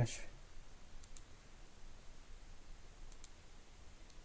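A few faint computer mouse clicks over quiet room noise: one about a second in, then two close together about three seconds in.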